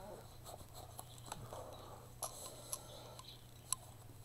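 Faint rustling and handling of paper and card stock pages, with a few small sharp taps in the second half, over a low steady hum.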